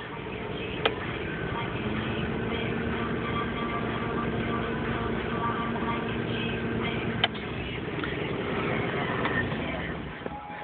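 A toggle switch clicks about a second in, then the 1993 Geo Metro's electric auxiliary radiator cooling fan runs with a steady whoosh and hum. A second click comes a little after seven seconds in, and the hum stops with it.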